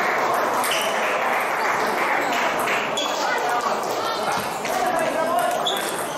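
Table tennis rally: the ball clicking off the rackets and the table in quick exchanges, over voices chattering in the large, echoing hall.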